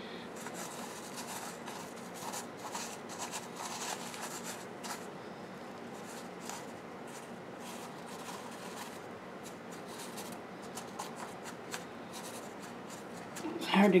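Fingers pressing and shifting wet perlite around leaf cuttings in a plastic tray: soft scratchy rustling with small clicks, coming in spells.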